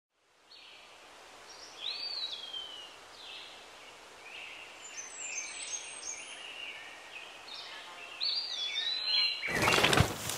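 Birds chirping and calling, a string of short notes, some sliding down in pitch, over a faint outdoor hiss. About half a second before the end a sudden loud rushing noise cuts in and covers them.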